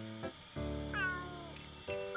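A cat meows once about a second in, falling in pitch, over background music of steady held notes.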